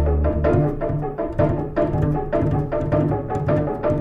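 Indian-jazz ensemble music: rapid pitched drum strokes over held low double bass notes and layered melodic notes.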